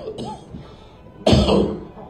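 A man coughs once, sharp and loud, into a close microphone about a second and a half in.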